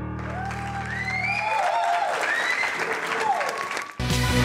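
The last piano chord of a song rings out and fades within the first second and a half, while a studio audience applauds, with a few voices calling out over the clapping.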